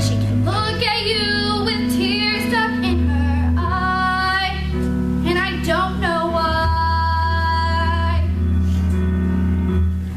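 A solo female voice singing a ballad over instrumental accompaniment, with several long held notes sung with vibrato.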